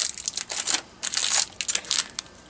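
Small clear plastic packets of flatback buttons crinkling in irregular bursts as they are handled in the hands.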